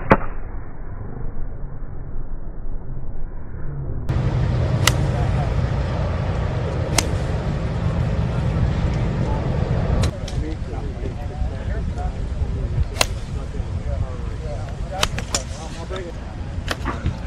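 Golf iron strikes on practice-range balls: about half a dozen sharp cracks a few seconds apart, over low outdoor rumble and faint murmuring voices. For the first four seconds the sound is dull and muffled, then it turns clear.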